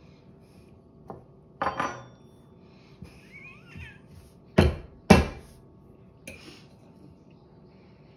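A metal fork clinking and knocking against a ceramic plate as a piece of apple pie is cut and picked up. There are several separate clinks, one with a short ring, and the two loudest knocks come close together about halfway through.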